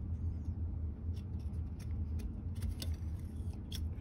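Small metal clicks and scrapes as steel parts are pushed back into the cold-rolled steel body of a homemade rifling cutter, scattered and growing more frequent in the second half, over a steady low hum.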